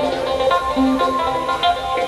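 A live band playing, with guitars heard over the steady music.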